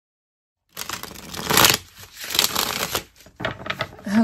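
A deck of tarot cards being shuffled by hand: papery rustling and flicking in three runs, starting about three-quarters of a second in.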